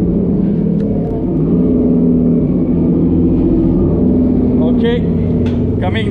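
Ship's machinery running, a loud steady low drone with a few steady tones in it, heard below decks; a short voice sounds near the end.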